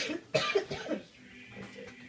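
A person coughing: the tail of one cough at the very start and a second short cough about a third of a second in.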